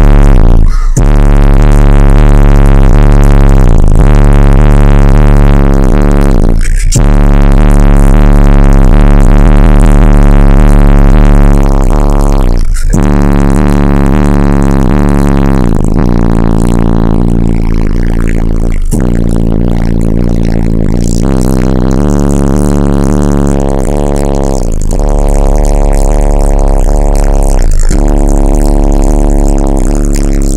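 Very loud bass-heavy electronic music played through a 1999 GMC Yukon's car audio system with four Ascendant Audio Mayhem 18-inch subwoofers, heard inside the cab. Long deep held bass notes, broken by short gaps about every six seconds.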